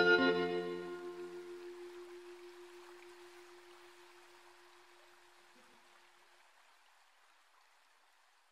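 The closing held organ chord of a sped-up song fading out: most of the chord dies away within the first two seconds, a single note lingers until about six seconds in, and then only a faint hiss remains, trailing off.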